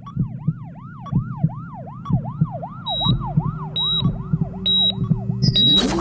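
Siren-style electronic sound effect yelping up and down about three times a second over a pulsing low beat, with short high beeps about once a second from about halfway. Near the end a sudden loud whoosh opens into music.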